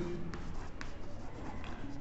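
Chalk writing on a green chalkboard: a handful of faint scratches and taps as a word is written.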